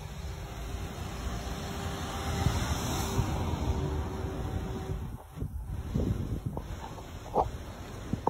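A vehicle passing along the road, its noise swelling and fading around three seconds in, over steady street noise; a few short knocks follow near the end.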